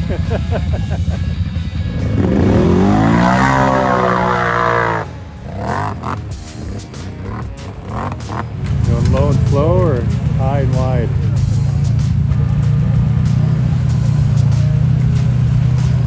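Off-road vehicle engines working through deep mud. An engine revs up hard, climbing in pitch, from about two to five seconds in. From about nine seconds in a loud, steady engine drone takes over.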